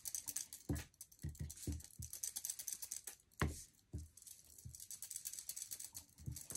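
Foam sponge dauber dabbing ink onto paper: soft, irregular taps with a fine crackling rustle, one firmer tap about three and a half seconds in.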